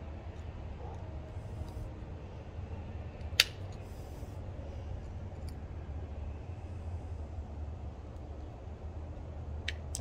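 Needle-nose pliers working wire spade connectors onto a start capacitor's terminals: one sharp metallic click about three and a half seconds in, with a few faint ticks, over a steady low background rumble.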